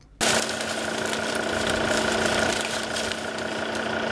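A steady engine-like hum under a constant hiss with faint crackles, cutting in abruptly just after the start.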